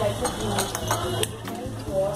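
Cutlery and plates clinking a few times on a café table as the food is handled, over background music and chatter.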